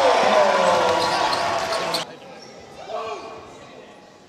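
Indoor basketball game sound: a ball bouncing on the court with voices in a large hall, loud for about two seconds, then cut off suddenly to a quieter stretch of court sound.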